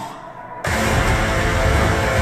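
Horror film trailer music: subdued at first, then cutting in suddenly loud and full about two-thirds of a second in, and staying loud.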